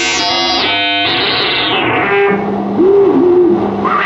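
Live frequency-modulation synthesizer from a SuperCollider patch, played through a television's speaker. For about two seconds the tones are bright and full of overtones, with pitches sliding; then the sound thins to a low held note under a wobbling higher tone.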